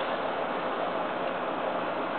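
Steady background hiss, with no distinct sound events.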